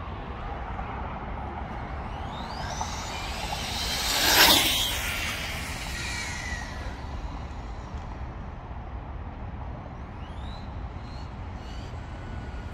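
Kyosho GT2-E RC car driving, its motor whining up in pitch as it accelerates. About four seconds in it makes a loud rush as it passes close by, and near the end it gives another rising whine as it speeds away.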